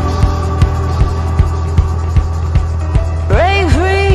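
Music track: a deep sustained bass note under a steady kick-drum beat, about two and a half beats a second. A wavering, sliding melody line comes in near the end.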